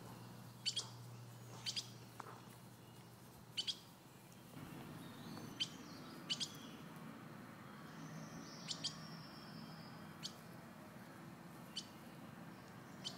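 Short, sharp bird chirps, a dozen or so, often in quick pairs, spaced irregularly, over a faint background; a low hum in the first few seconds gives way to a soft steady noise about four seconds in.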